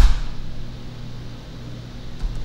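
A single sharp, loud tap right at the start, heavy in the low end as if on the desk, then a steady low hum with a faint tick or two.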